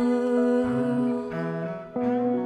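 Slow instrumental passage of a small string band: a fiddle holds long bowed notes over guitar, and a low bass note enters a little past halfway.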